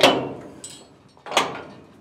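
Two loud metal clanks, the second a little under a second and a half after the first, each ringing out briefly: the chaff spreader of a Claas Trion combine harvester being raised back into place and latching.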